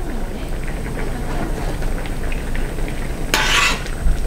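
A metal ladle stirring and scooping tteokbokki simmering in a pan on a portable gas burner, with light clinks of the ladle against the pan over the low bubbling. Near the end there is a brief louder scrape.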